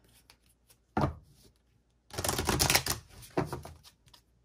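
An oracle card deck being shuffled by hand: a single tap about a second in, then a quick rapid run of card flicks near the middle and a shorter one after it.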